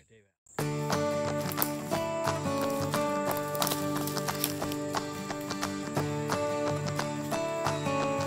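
Background music comes in abruptly about half a second in: held notes over a regular, plucked-sounding pulse.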